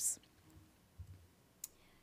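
A pause in the room: a soft low thump about a second in, then a single sharp click.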